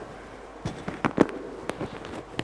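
A handful of sharp knocks and clicks, irregularly spaced, starting about half a second in.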